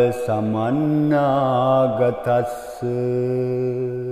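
A man chanting a Buddhist protective mantra in Pali, slow and melodic, drawing out each syllable. A long held note fills the second half.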